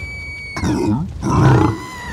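A cartoon character's low guttural grunts, two short ones about half a second apart in the middle.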